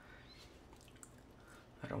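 Near silence: room tone, with one faint tick about a second in.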